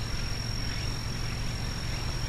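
Steady outdoor background noise: a low rumble with a thin, steady high-pitched tone held above it. No ball or bat sound.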